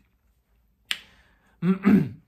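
A single sharp click about a second in, fading out over about half a second, followed near the end by a brief sound of a man's voice.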